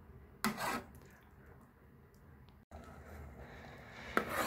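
Metal spoon stirring soup in an aluminium pot, with one brief scrape about half a second in; otherwise faint, with a quiet steady hiss in the second half.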